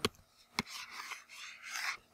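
Faint scratching of a pen stylus on a tablet surface: a light tap as the pen touches down, then a few short strokes as a rectangle is drawn.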